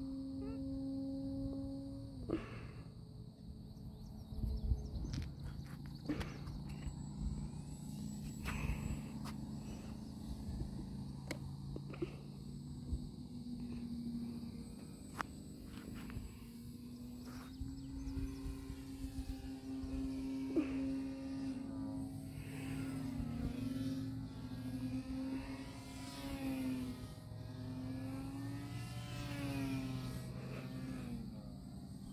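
Electric motor and propeller of an E-flite Night Radian 2.0 m RC motor glider buzzing in flight. It cuts out about two seconds in, comes back around the middle, and wavers up and down in pitch near the end. A steady chorus of crickets sounds behind it.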